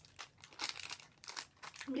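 Small plastic candy packet crinkling in the hands: a series of short rustles over about a second and a half.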